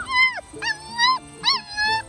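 A six-week-old Welsh Springer Spaniel puppy whining: three high-pitched cries that bend up and down in pitch, each close on the one before.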